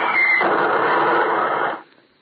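Radio-drama sound effect of a shell bursting: a loud rush of noise that cuts off suddenly near the end, marking the moment the soldier in the dugout is hit.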